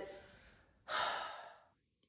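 A woman sighs once, a single breathy exhale about a second in that fades away, a sigh of disappointment at how her hair turned out.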